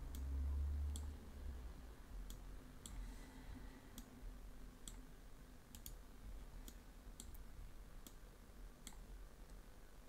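Computer mouse clicking: about a dozen single clicks at uneven intervals, roughly a second apart, as edges are picked in a CAD program. A low rumble runs under the first second or so.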